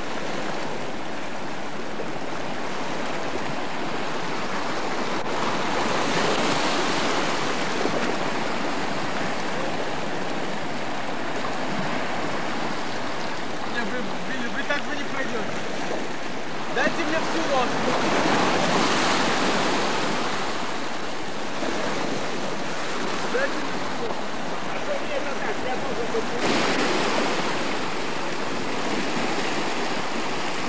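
Sea waves washing onto a rocky shore: a steady rush that swells louder three times as waves break.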